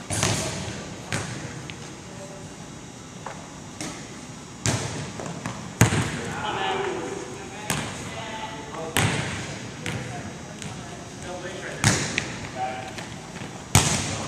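Volleyballs being struck and bouncing on a hardwood gym floor: about eight or nine sharp slaps and thuds at irregular intervals, each echoing in the large hall, with faint voices underneath.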